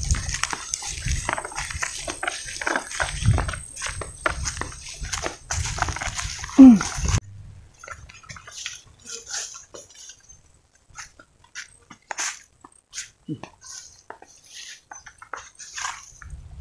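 Footsteps and rustling vegetation as a person walks through grass and brush, with a short falling voice-like cry about six and a half seconds in, the loudest moment. After a sudden drop about seven seconds in, the footsteps continue more quietly and sparsely, with another brief falling cry near the end.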